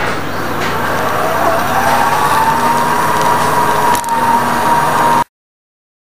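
Background noise of a busy warehouse store, with a whine that rises in pitch and then holds steady. The sound cuts off abruptly to silence about five seconds in.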